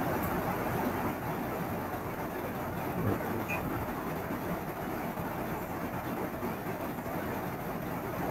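Steady background noise, a low even rumbling hiss with no distinct events.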